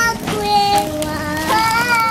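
Singing with backing music: a high voice holds long steady notes, moving from one note to the next every half second or so.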